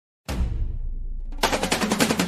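Electronic machine-gun sound effect from a battery-operated toy machine gun played through its small speaker: a tone starts about a quarter second in, then rapid-fire shots break out about a second and a half in.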